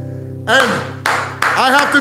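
An acoustic guitar's last chord ringing and fading. From about half a second in, a man's voice comes in over it with short cries that swoop up and down in pitch.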